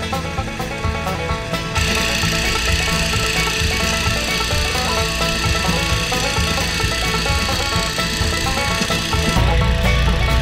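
Background music, over which a steady hiss comes in about two seconds in and drops away near the end.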